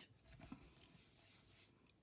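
Faint dry scuffing of a round stencil brush dabbed and rubbed on card to check whether it is clean, a few soft strokes about half a second in, otherwise near silence.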